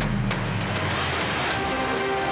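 Closing theme music of a TV news programme with a whoosh sweep rising in pitch over a held deep bass note. The sweep peaks about a second and a half in, and then the music's steady synth lines carry on.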